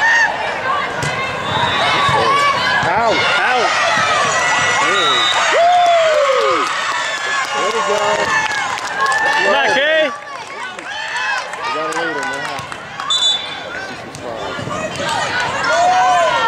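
Players and spectators shouting and cheering in a reverberant gymnasium during a volleyball point, with sharp knocks of the ball being hit. The calling is loudest in the first ten seconds, then eases.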